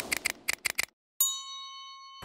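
Logo-sting sound effects: a quick run of about seven sharp clicks, a short gap, then a bright bell-like ding that rings out for about a second.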